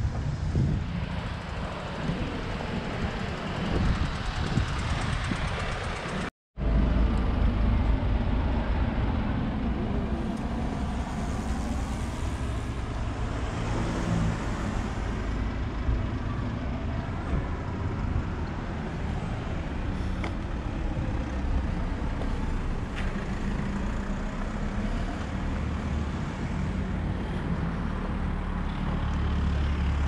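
Town street ambience: road traffic passing with a steady low rumble. The sound drops out to silence for a moment about six seconds in, then carries on.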